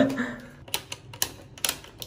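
A few sharp plastic clicks and knocks, about three, from a wall-mounted hair dryer being handled in its wall holder.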